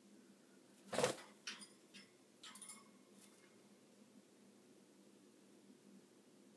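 A single knock about a second in, followed by a few light clicks and brief faint high peeps from pet lovebirds moving about their wire cage; otherwise quiet room tone.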